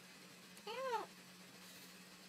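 A cat gives a single short meow, its pitch rising and then falling, about half a second in.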